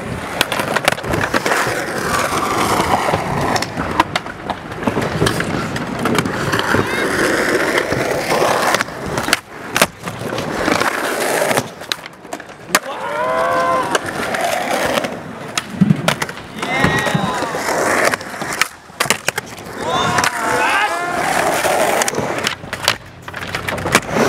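Skateboard wheels rolling over a concrete skatepark, with repeated sharp clacks of the board popping and landing on the ramps.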